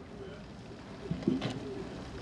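Faint, low bird calls against outdoor background sound, with a single sharp click about one and a half seconds in.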